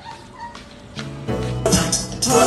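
Quiet for about a second, then background music starts with a steady beat and held notes.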